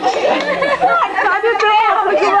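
Several people talking over one another in lively chatter, with laughter.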